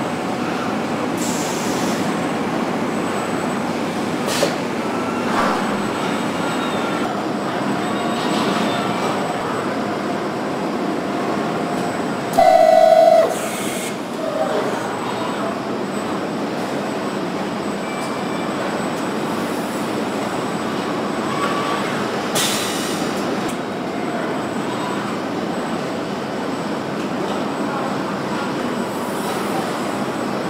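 Car assembly-line machinery: a steady industrial din from robots and conveyors, with a few sharp clanks. A louder buzz lasts about a second midway.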